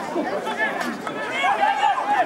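Several voices calling out and chattering over one another, from rugby players and onlookers around the pitch.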